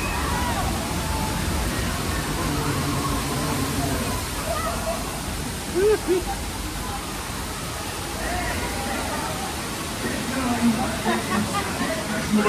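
A flash flood of water gushing and splashing against the tram's windows, then pouring down the rocks, with a steady rushing sound. Riders' voices are heard faintly over it.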